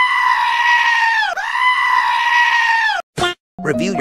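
Two long, high-pitched screams in a row, each about a second and a half long and dropping in pitch as it ends, played as a meme sound effect. A short burst of sound follows them near the end.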